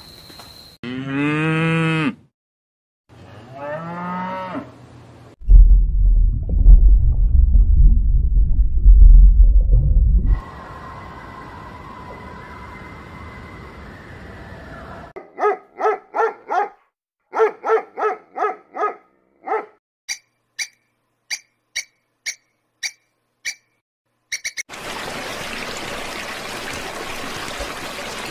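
A run of separate animal sounds: two arching pitched calls, then a loud, low rumbling growl lasting about five seconds, then a steady hum with two held tones. After that comes a series of short pitched pulsed calls and high clicks, several a second, and near the end a steady rushing hiss.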